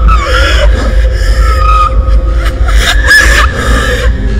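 Eerie horror soundtrack: a steady low rumbling drone with gliding, wailing tones over it.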